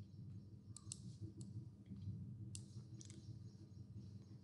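Computer mouse clicking: several faint sharp clicks, some in quick pairs, as a colour material is applied to a wall in the software. A low steady hum runs underneath.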